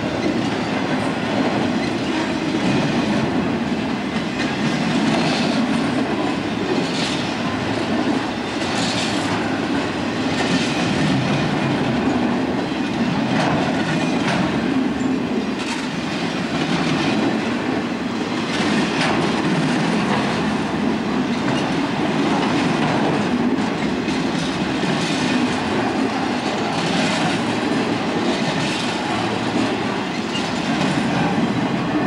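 Trailer-on-flatcar freight train rolling past close by: a steady rumble of steel wheels on rail, with sharp wheel clacks every second or two.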